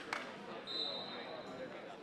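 Background chatter of a busy sports hall, with two sharp knocks right at the start and a thin, steady high tone lasting under a second near the middle.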